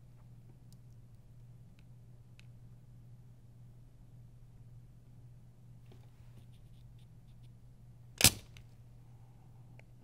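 A spring-loaded solder sucker fires once, about eight seconds in: its plunger snaps back with one sharp, loud click as it pulls molten solder from a heated joint on a circuit board. A faint steady hum runs underneath.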